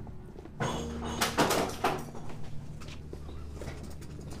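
A wooden door clattering and the footsteps of several people walking in. It is loudest in the first two seconds, then trails off into lighter steps and knocks.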